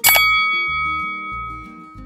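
A single bell 'ding' sound effect, struck once and ringing out, fading over about a second and a half, over background music.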